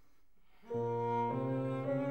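A cello comes in about two-thirds of a second in with sustained bowed low notes, moving to a new note about half a second later; before that there is near silence.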